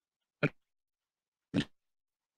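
Two short snatches of garbled audio, each about a tenth of a second, about half a second in and again about a second later, with dead silence between. This is a glitching live-stream audio feed breaking up into fragments.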